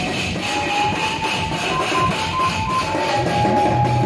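Electronic drum pad struck with drumsticks in a fast, dense percussion pattern, with a high, stepping melody line playing over it.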